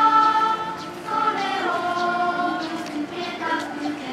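A group of schoolchildren singing together in unison, holding each note for about a second.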